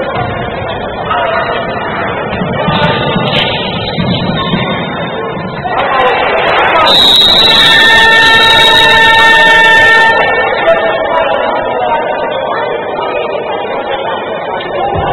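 Basketball arena game horn sounding a single steady, loud buzzing blast of about three seconds, midway through. It signals a stoppage in play, here a timeout. Before and after it, arena music and voices fill the hall.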